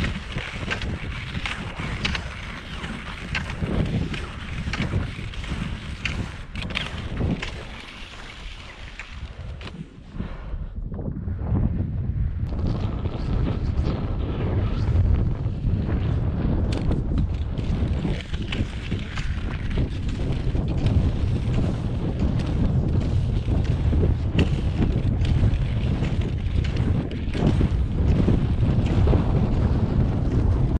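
Wind buffeting the microphone, a deep rumbling rush, along with the swish and scrape of skis gliding and poles planting in packed snow. The wind rumble gets louder about ten seconds in and stays strong.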